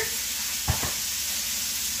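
Ground lamb sizzling in a hot skillet, a steady hiss, with two brief knocks a little under a second in.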